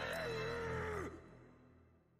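Anime soundtrack: one long, wavering held note over a low drone, fading out to silence about a second and a half in as the scene ends.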